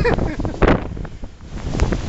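Strong nor'easter wind gusts buffeting the microphone in irregular blasts, strongest about two-thirds of a second in and again near the end.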